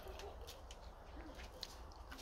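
Quiet outdoor ambience: a steady low rumble, likely wind on the microphone, with a few faint short ticks.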